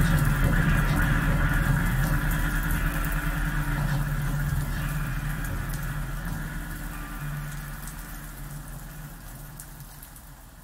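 Droning live jam music, a low sustained drone under higher held tones, fading out steadily to quiet.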